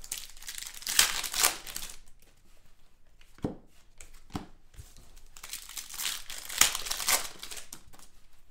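Foil wrappers of Panini Prizm basketball card packs crinkling and tearing as they are handled and ripped open, in two stretches of rustling with a few light clicks between them.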